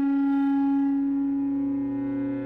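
Contemporary chamber ensemble music: a wind instrument holds one long note, and just after the start a lower held note comes in beneath it.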